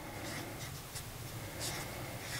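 Handwriting on a label: a few faint, short scratching strokes of a pen.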